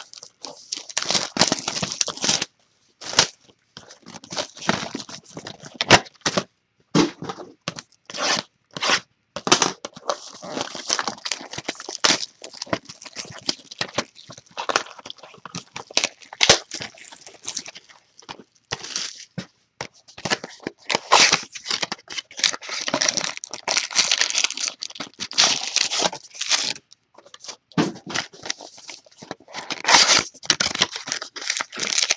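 Plastic shrink wrap being torn and crumpled off sealed boxes of trading cards: irregular crinkling rips with sharp crackles, broken by short pauses.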